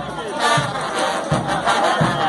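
A frevo street brass band playing, with trumpets, trombones and sousaphones, and a large crowd's voices shouting and singing along over it.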